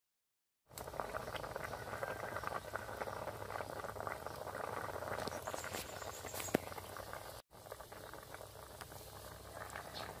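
Water boiling hard in a wok over a wood fire: a steady bubbling hiss with scattered small pops. It starts a little under a second in after silence, and drops out for an instant about seven and a half seconds in.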